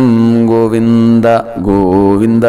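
A man chanting a Sanskrit devotional prayer verse in a melodic recitation, drawing out the closing syllables in two long held notes with a brief breath between them.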